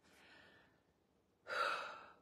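A woman's short audible intake of breath, about a second and a half in, after a quiet pause.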